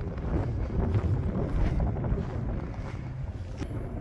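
Wind buffeting the microphone outdoors, a steady low rumble with no distinct strokes.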